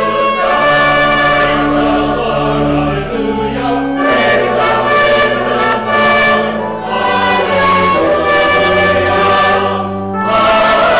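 Church choir singing in parts, holding long chords that change every second or two.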